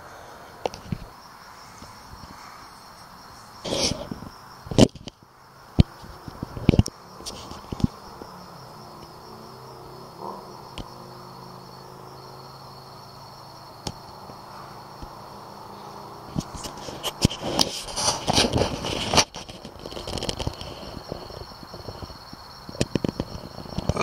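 A steady, high insect chorus of the night, with several sharp clicks and knocks a few seconds in and bursts of rustling later on.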